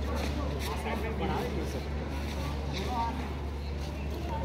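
Scattered voices and calls of onlookers at a tug-of-war, none of them clear words, over a steady low rumble.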